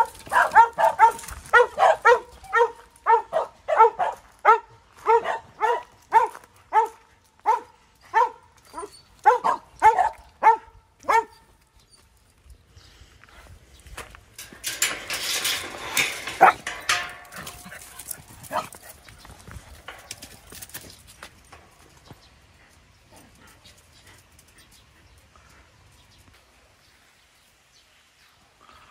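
A dog barking over and over, about two barks a second, for roughly the first eleven seconds. A few seconds of rustling noise with a couple of clicks follow.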